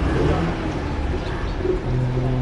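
A bird cooing, once near the start and again near the end, over a steady low rumble.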